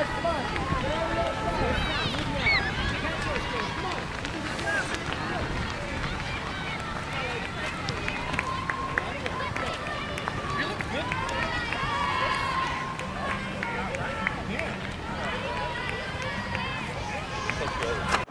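Several spectators' voices shouting and calling out over one another to passing cross-country runners, with the runners' footsteps on grass underneath.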